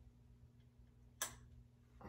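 A single sharp click about a second in, over a faint steady low hum in an otherwise near-silent room.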